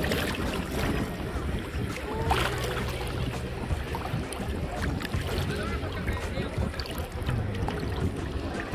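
Calm sea water lapping and sloshing right at a microphone held at the water's surface, with small splashes and a low wind rumble.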